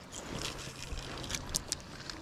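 Quiet handling noise of a spinning rod and reel during a cast and retrieve: a faint low hum in the first half and a few light clicks in the second half.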